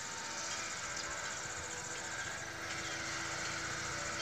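Steady field ambience: insects trilling continuously at a high pitch over a steady low mechanical hum.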